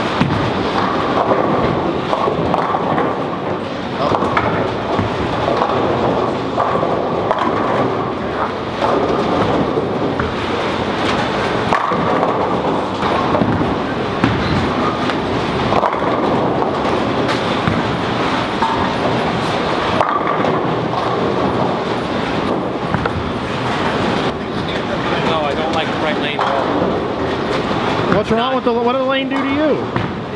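Busy bowling-alley din: bowling balls rolling down the lanes in a continuous rumble, with a handful of sharp crashes of pins and a murmur of crowd chatter underneath.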